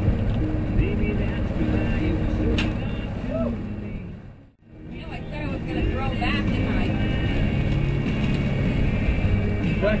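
Twin 200 hp outboard motors running steadily while trolling, with faint voices beneath. About halfway through the sound drops out almost completely for a moment, then returns.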